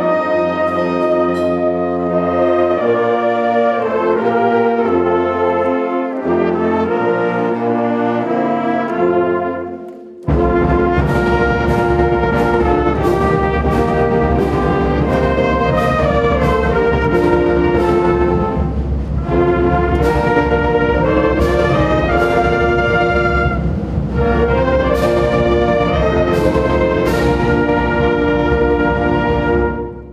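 A high school concert band of saxophones and brass, with a sousaphone, plays sustained chords. About ten seconds in the music dips briefly, then goes on with a heavier bass and sharp strokes on the beat.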